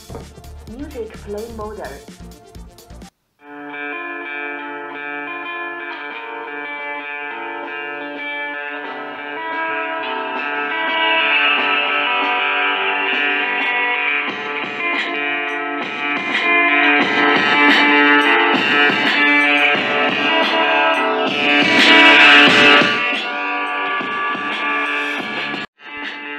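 X3S portable speaker playing guitar music from a USB flash drive. The drive is plugged in first, with a few clicks of handling, and the music starts about three and a half seconds in. It grows louder about nine seconds in and plays loud, a level at which the reviewer hears distortion from the small speaker.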